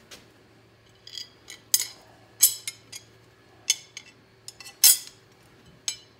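Flat hot-rolled steel bumper bars clinking and knocking against each other as they are picked up and handled: about ten sharp metal clinks at irregular intervals, the loudest about five seconds in, over a faint steady hum.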